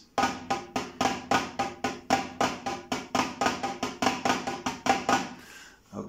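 Pataflafla rudiment played with wooden sticks on a Roland electronic drum kit's snare pad. It runs as a steady stream of groups of four strokes, each with a flam on the first and last note, and stops about a second before the end.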